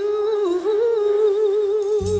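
Female vocals holding one long sung note with a wavering vibrato, unaccompanied, with no band underneath.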